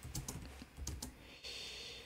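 Computer keyboard being typed on: a faint, irregular run of separate key clicks as a terminal command is entered.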